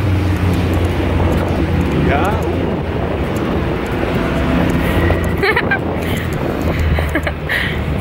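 Wind buffeting a handheld camera's microphone outdoors, a steady low rumble.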